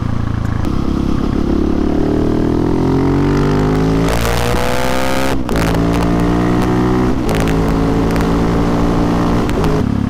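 Husqvarna 701 Supermoto's single-cylinder engine under way, its pitch climbing for the first four seconds, then dropping with a brief break about five seconds in as it shifts up, and running level after that with another small change about seven seconds in. It is heard through Wings aftermarket exhaust cans that the owner thinks need repacking.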